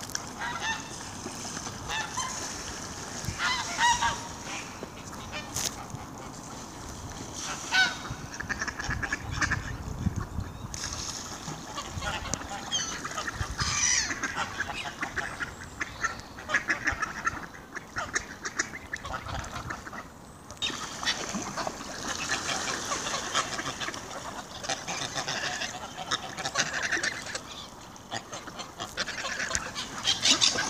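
A gathered flock of geese, greylags among them, honking over and over, mixed with calls from ducks and other waterfowl close by.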